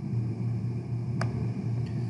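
Steady low hum with faint hiss of background room noise, and a single sharp click about a second in, which fits a computer mouse click.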